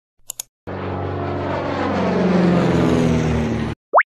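Airplane engine sound effect: about three seconds of engine tones slowly falling in pitch, which cut off suddenly. A short tap comes just before it, and a quick rising swoosh follows near the end.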